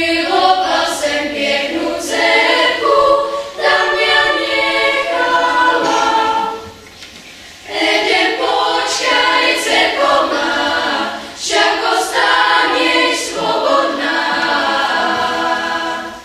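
Children's choir singing: two long phrases, with a short break about seven seconds in.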